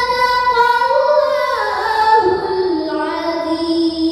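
A girl's voice chanting Qur'an recitation (tilawah) in one long melodic phrase that steps gradually down in pitch.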